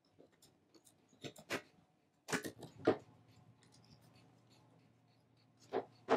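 Utility knife blade scraping and cutting away crumbling particle board around a blown-out cam screw hole, in short, irregular scratchy strokes. The loudest cluster of scrapes comes a little over two seconds in, with another near the end.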